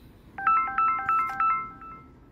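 A phone ringtone: a short, bright melody of quick stepped notes plays once, starting about half a second in, the same phrase heard just before it, so it is repeating.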